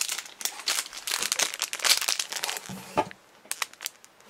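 Crinkling of a clear plastic bag of pin badges as it is handled, a dense run of crackles that thins out to a few scattered clicks near the end.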